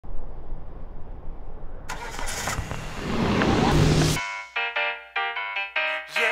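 A car engine rumbles. From about two seconds in, a loud hissing rush swells over it and cuts off abruptly just after four seconds, when music with short, clipped notes begins.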